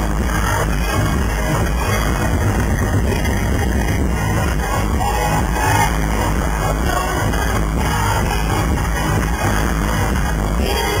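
Live electronic dance-pop music played loud through an arena sound system, heard from within the crowd, with a steady heavy bass.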